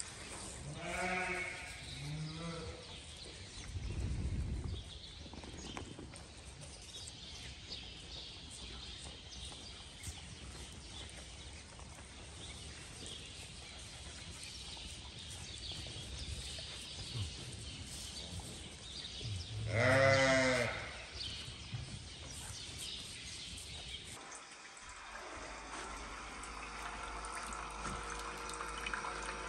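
Ewes bleating: two short bleats about a second in, then a longer, louder bleat about twenty seconds in. Near the end, a single-cup pod coffee maker hums steadily as it brews.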